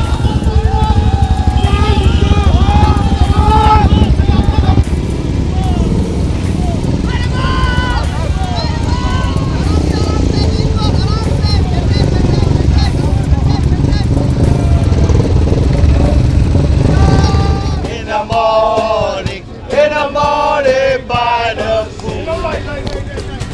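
Several Royal Enfield motorcycle engines running at low revs, held to a crawl for a slow race, with a steady, fast exhaust beat under voices. About three-quarters of the way through the engines fall away and nearby voices take over.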